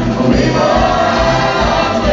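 Live band with a group of backing singers performing on stage, choir-like sung vocals over a steady drum beat, heard from the audience seats of a theatre.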